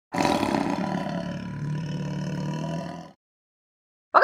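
Intro sound effect over the title card: a loud, rough, roar-like noise that sets in abruptly, eases off and fades out about three seconds in.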